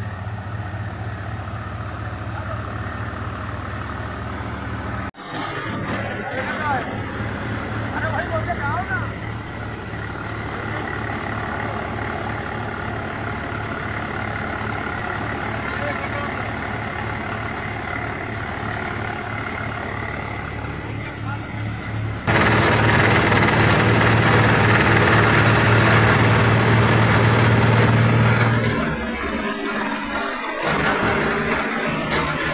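Diesel tractor engine running steadily with a low, even hum while it drives a paddy-husking machine (rice huller). The sound jumps suddenly louder about two-thirds of the way through.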